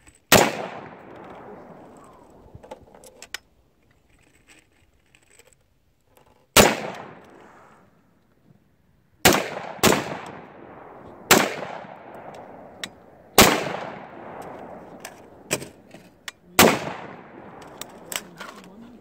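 Seven rifle shots from an AR-15-style semi-automatic rifle, fired one at a time at uneven intervals with a quick pair about 9 and 10 seconds in. Each sharp crack trails off over about a second.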